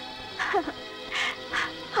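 Background film score of sustained held tones, with three short, noisy sounds over it.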